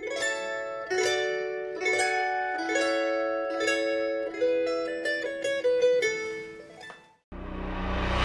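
Light background music: a melody of plucked-string notes, each struck sharply and dying away, that fades out about seven seconds in. A different piece of music starts just before the end.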